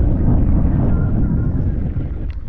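Wind buffeting the microphone: a loud, low, gusting rumble that fluctuates throughout.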